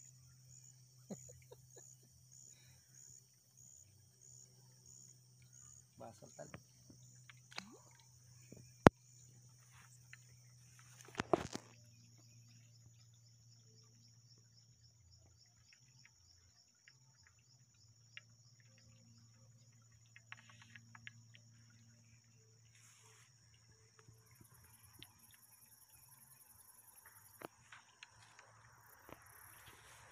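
Insects chirping in a steady high trill, pulsing about twice a second at first and faster later, over a low steady hum. Scattered small clicks, one sharp click about nine seconds in, and a brief rustle a couple of seconds after it.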